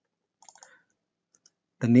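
Faint, short clicks of a computer mouse, a quick cluster about half a second in and a single one near the middle, as a word in a code editor is clicked to select it. A voice starts speaking at the very end.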